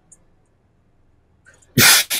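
A person sneezing once, loudly, near the end.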